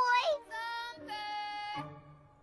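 A young cartoon character's wordless voice: a short wavering cry, then two long held, sung-sounding notes.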